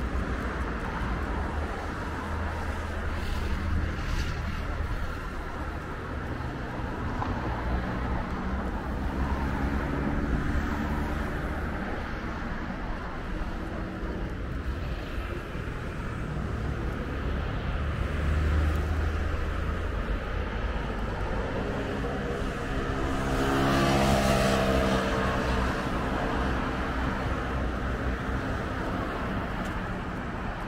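Road traffic on a seafront road: a steady background of cars, with one vehicle passing near the end, which is the loudest moment.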